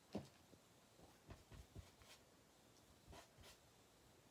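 Near silence with a few faint, short rustles and light taps of paper scraps being handled on a desk.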